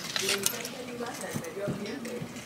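Clothes hangers clicking and rattling against a metal clothing rack as a stuck garment is tugged at, with a cluster of sharp clicks near the start. Faint background voices or music run underneath.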